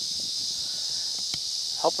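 Steady, high-pitched chorus of insects such as crickets, with a couple of faint clicks.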